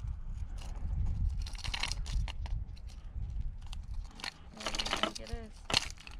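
Small clicks and light rattles of pliers and a crankbait's treble hooks as the lure is worked out of a largemouth bass's mouth, over a steady low rumble.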